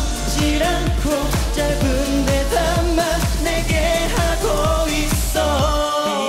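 K-pop song with a male lead vocal singing over a pop backing track with a steady driving beat; the bass drops out briefly near the end.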